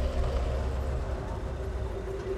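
Car engine idling, a low steady rumble, with a faint held tone above it.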